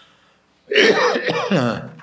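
A man clears his throat with a short voiced cough, about a second long, starting after a brief pause.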